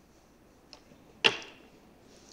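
A slide projector changing slides: a faint click, then about half a second later a single loud, sharp clack that rings out briefly.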